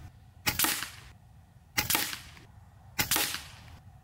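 FX Impact M4 .22 PCP air rifle firing three shots about a second and a quarter apart. Each is a sharp crack with a short fading tail.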